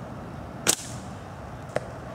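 Collapsible aluminum slingshot fired: one sharp snap of the bands on release about two-thirds of a second in, followed about a second later by a much fainter click.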